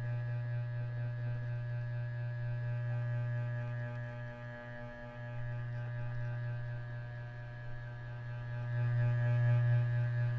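A steady low electrical-sounding hum with a buzzy stack of overtones, dipping briefly near the middle and swelling louder near the end.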